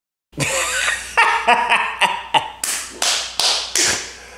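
A man laughing hard, with his hands clapping together several times; the four loudest claps come about 0.4 s apart in the second half.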